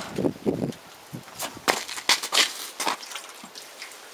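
A man stepping down from a truck's side step onto a rough road and walking, heard as a few separate scuffs and crunches of shoes on the gritty surface.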